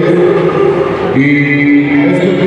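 A man's voice heard loudly through a microphone and PA, declaiming in a chant-like way and holding one long drawn-out note in the second half.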